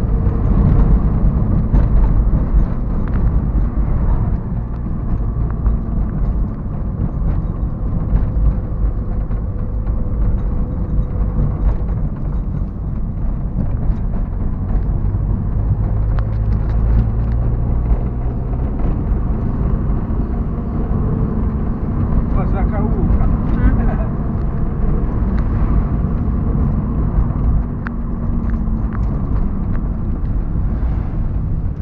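Car engine and road noise heard from inside the cabin while driving: a steady low rumble, with the engine note shifting now and then.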